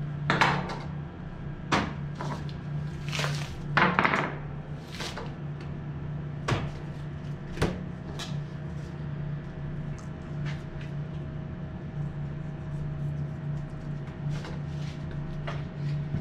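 A knife and pieces of elk meat being handled on a cutting board: scattered short knocks and clicks as the knife cuts and is set down and the meat is moved. Under them runs a steady low hum.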